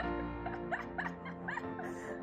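Background music: held chords under a run of short, quick gliding notes, about three a second.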